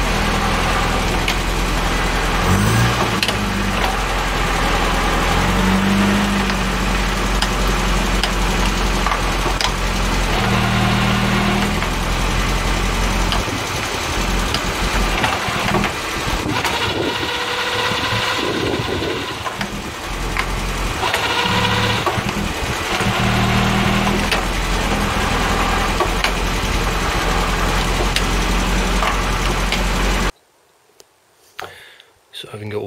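Land Rover Series 3 engine running on a static test through a freshly fitted reconditioned gearbox and transfer box, propshafts off, while the gears are worked in and out. The engine note shifts several times as gears are engaged. Selection is very tight, as the new synchronisers and heavy detent springs have not yet freed up.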